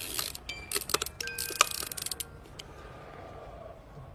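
A quick run of sharp clicks and light clinks, some leaving short ringing tones. It thins out after about two seconds to a faint hum.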